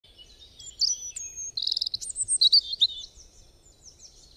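Birdsong: quick high chirps, sweeping whistled notes and a rapid trill. It is loudest in the middle and fades away near the end.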